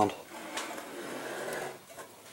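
A Predator 212cc small engine being turned around by hand on a workbench: a scraping, rubbing handling noise with a couple of faint knocks, dying away after about a second and a half.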